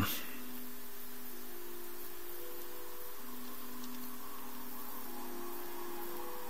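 Room tone: a steady hiss with faint humming tones that shift in pitch every second or two, and no distinct event.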